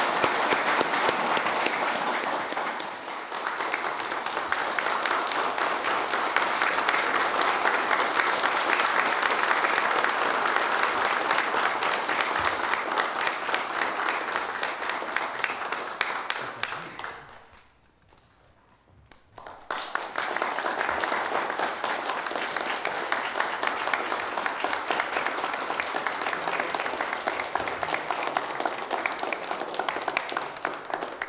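A room of people applauding, a dense, steady clapping that goes on and on. It dips briefly about three seconds in and cuts out for about two seconds just past the middle before resuming.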